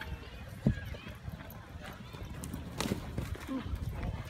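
Horse hooves thudding on arena dirt, with a few sharper knocks, under faint voices of onlookers.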